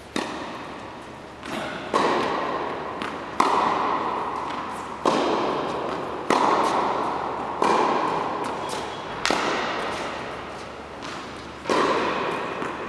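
Tennis ball struck back and forth by rackets in a rally, a sharp hit every second and a half or so, each ringing on and fading in the echoing indoor tennis hall.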